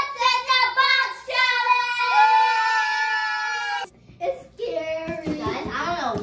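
A young girl singing in a high voice, a few short sung notes and then one long held note that breaks off about four seconds in.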